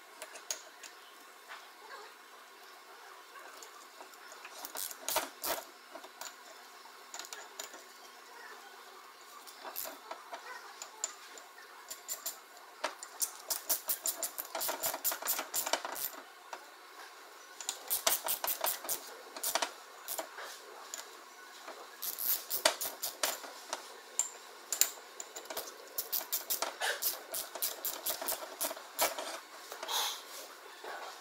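Hand ratchet running the ring gear bolts into a differential carrier, heard as bursts of rapid clicking with pauses between bolts.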